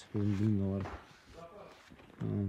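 A man's voice in one short utterance near the start, then only faint background sound.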